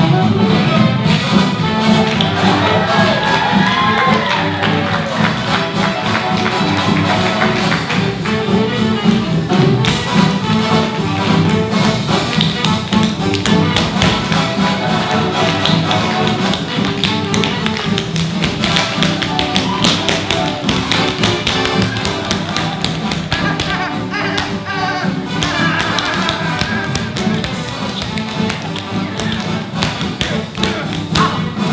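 Tap shoes striking a wooden stage floor in fast, dense rhythms, over continuous backing music.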